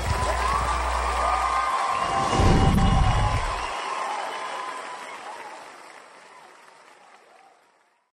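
Studio audience applauding and cheering right after the song ends, with a few scattered whoops. A deep low rumble swells briefly about two seconds in, and the applause fades out over the last few seconds.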